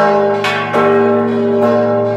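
Church bells rung by hand in a repique, a rhythmic Mexican peal: three loud strikes, a bit under a second apart, each ringing on over the bells' long sustained hum.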